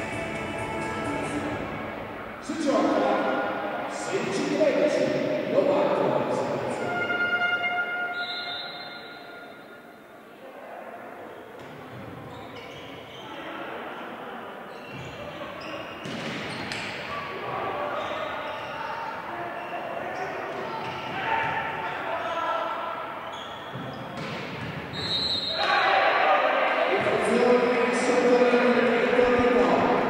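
Volleyball rally in a large, echoing sports hall: the ball struck several times, with players' shouts and spectators' voices, which swell to loud cheering in the last few seconds as the point is won.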